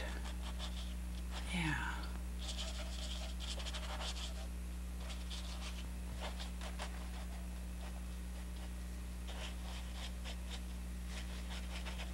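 A small paintbrush scratching and dabbing oil paint onto canvas in short, irregular strokes, over a steady low hum. A brief murmur that falls in pitch comes about a second and a half in.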